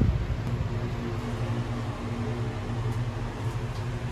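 Steady, even hum and hiss of a ventilation or air-conditioning fan.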